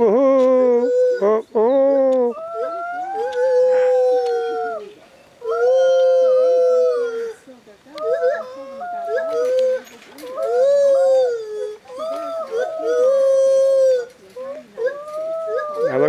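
White-handed gibbon whooping: a long run of loud, pitched calls, mostly held notes of a second or two that bend up and down, with quick rising notes at the start.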